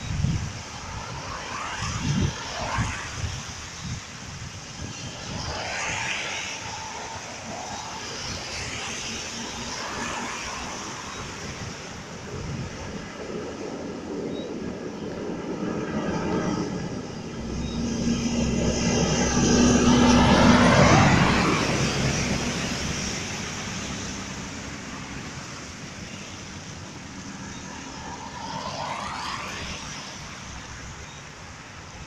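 Road noise from a vehicle driving on a wet highway, with the hiss of tyres on the wet road as other vehicles pass every few seconds. A louder engine drone swells and fades about 18 to 24 seconds in.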